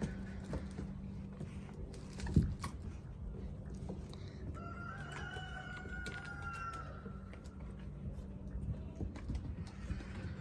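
A rooster crowing once, a single long drawn-out call that starts about halfway through and lasts a couple of seconds. Underneath are the light knocks and scuffles of puppies wrestling with toys on a wooden deck, with one sharp thump about two and a half seconds in, and a low steady hum.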